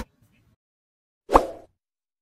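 Background music cuts off, then near silence until a single short cartoon-style pop sound effect about a second and a half in, from a subscribe-button end-card animation.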